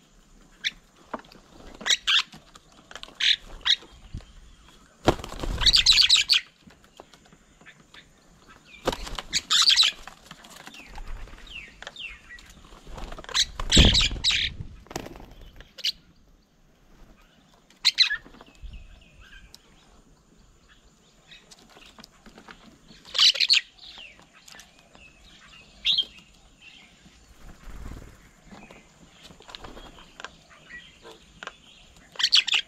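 Doves and mynas at a bird table: three loud flurries of wingbeats as birds fly in and out, about five, nine and fourteen seconds in. Short, sharp bird calls come in between.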